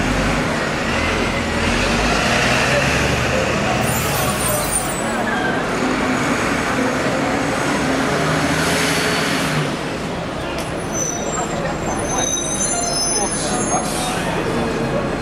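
Busy city street traffic: buses and other vehicles running, with hisses of air brakes, under the chatter of a crowd.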